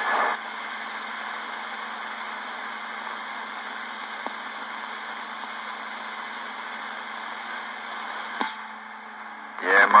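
CB radio receiver hiss between transmissions: steady static from the speaker, with a sharp click about eight seconds in, after which the hiss drops a little before a distant voice comes back in at the very end.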